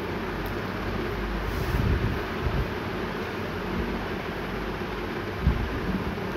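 Steady rushing noise of a large pot of tomato and onion masala frying on the stove, with a few soft low thumps around two seconds in and again near the end.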